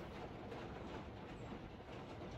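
Faint, steady background noise with a low rumble and no distinct events: the room tone of a small room.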